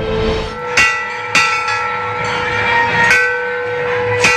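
Temple bell struck three times at uneven intervals, each strike ringing on with clear overlapping tones.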